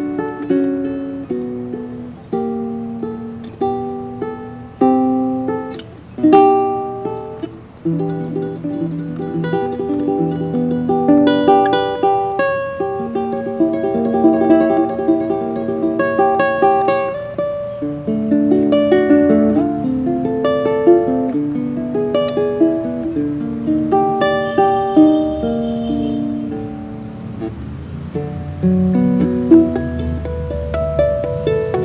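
Kanilea GL6 guitalele, a six-string mini guitar tuned up to ukulele pitch (A-D-G-C-E-A), played solo fingerstyle: a picked melody over chords and bass notes. The first several seconds are sparser, with single notes ringing out; after that the playing grows fuller, with steady bass notes underneath.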